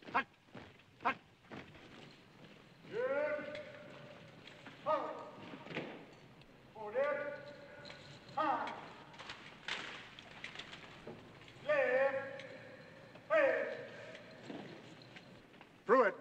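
A drill sergeant calling drawn-out marching commands: about six long, sung-out calls spaced a second or two apart. Thuds of boots in step come between the calls in the first couple of seconds.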